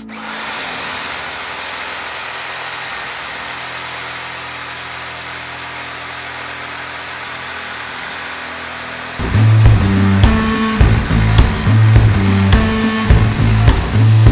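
Bosch GSA 1100 E corded reciprocating saw cutting through a log, a steady harsh buzz that comes on suddenly. About nine seconds in, loud rock music with a heavy beat comes in over it.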